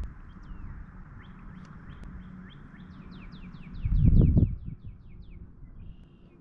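Songbirds chirping outdoors, then one sings a run of about a dozen quick down-slurred notes. About four seconds in, a brief low rumble is the loudest sound.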